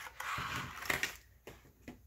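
A small paper gift box being opened by hand: light rustling and scraping of card stock through the first second, then a few small clicks and taps as the contents are lifted out.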